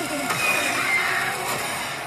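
Horror-film trailer soundtrack: a dense, dark swell of score and sound effects with no dialogue, with a high tone near the middle that steps down in pitch.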